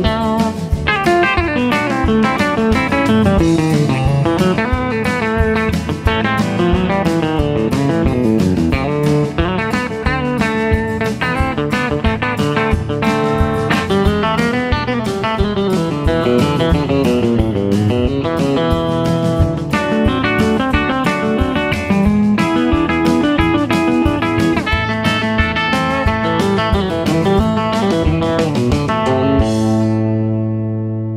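Guitar music with busy picked lines over a steady rhythm and bass, following a chord progression in A that moves through A, D and E chords.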